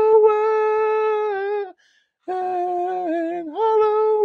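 A man's voice singing wordless, drawn-out notes in imitation of a children's chant. There are two long held notes with a brief break between them; the second starts lower and steps up near its end.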